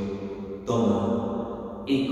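A low, sustained chant-like drone in an echoing church. It swells suddenly a little under a second in, and again near the end.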